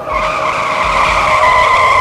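Tyre-screech skid sound effect: a steady high squeal that holds for about two seconds, then cuts off suddenly.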